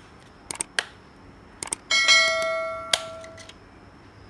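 A few light clicks as a RAM module is pressed into a laptop motherboard's memory slot. Then, about two seconds in, a single bright metallic ring that dies away over about a second and a half.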